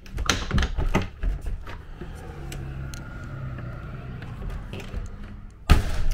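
Clicks and rattles from an RV entry door's latch and handle being worked by hand. A low steady hum runs through the middle, and a loud knock comes near the end.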